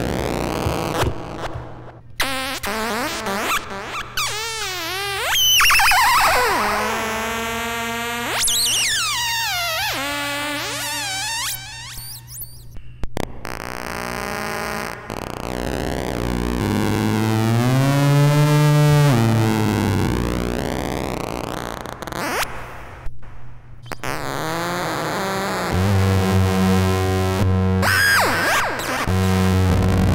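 Rakit Disintegrated Cracklebox played by fingertips bridging its touch pads, fed through a Boss RV-6 reverb pedal in delay-and-reverb mode. It makes glitchy electronic squeals and buzzes that glide up and down in pitch and break off abruptly, with a steady low buzz near the end.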